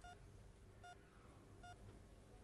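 Faint, short electronic beeps repeating at a steady pace, a little faster than one a second: a hospital patient monitor sounding with the heartbeat.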